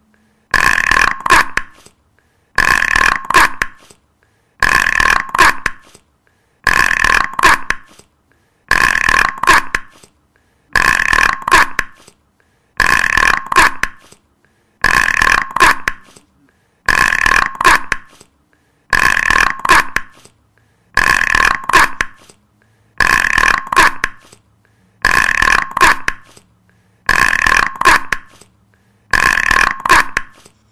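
A loud, rough sound about a second long, repeated identically about every two seconds as a loop, with silence between repeats.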